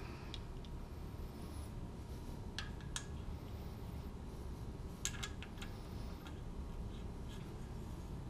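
Faint handling of small oiled metal engine plugs and a rag at an engine's cylinder head: a few light clicks, the sharpest about three and five seconds in, with some soft rubbing.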